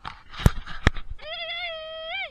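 A man lets out one long, high yell that holds steady, then lifts and falls away at the end. Before it come sharp knocks and rustling on the camera's microphone.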